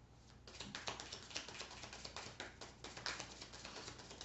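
A deck of oracle message cards being shuffled by hand: a rapid run of soft clicks and rustles as the cards slide and tap against each other, starting about half a second in.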